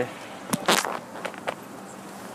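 The 2011 Hyundai Sonata 2.0T's turbocharged four-cylinder engine idling quietly, heard from inside the cabin, running smoothly and sounding nice and tight. A few clicks and a short, sharp noise about three-quarters of a second in stand out over it.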